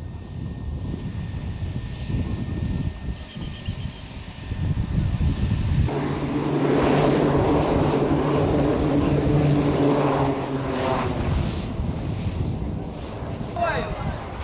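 Small twin-engine propeller plane's engines running. A low rumble for the first several seconds changes abruptly about six seconds in to a louder, steady drone as the plane lands.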